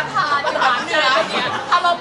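Only speech: several voices talking over one another.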